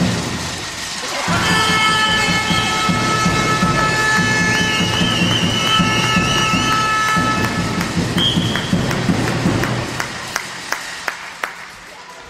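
A loud burst of crowd noise in a sports hall starts about a second in: a long held horn-like tone over rhythmic thumping, fading out by about eight seconds, right after a shot on goal. Near the end a handball bounces on the hall floor several times.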